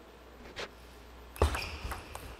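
Celluloid-type table tennis ball being hit and bouncing on the table: a faint tap about half a second in, then sharp racket and table hits from about a second and a half in as the serve opens a rally.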